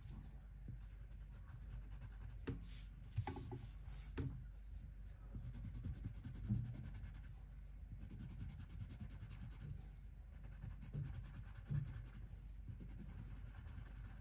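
Black Leo&Leo Carbon Line wax-core colored pencil rubbing on paper in short strokes, filling in a small area under a little pressure. Faint, with a few sharper ticks between about the third and fourth seconds.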